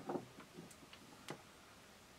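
A few light clicks and taps as a cylindrical lithium-ion cell and metal multimeter probe tips are handled. The clearest click comes about a second and a half in.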